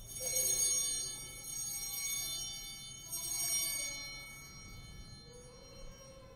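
Altar bells rung three times at the elevation of the chalice, each ring a cluster of high ringing tones that fades away. The bells mark the moment the consecrated chalice is shown to the congregation.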